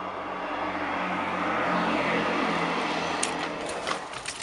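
Rushing noise of a vehicle going past, swelling toward the middle and easing off, with a short click about three seconds in.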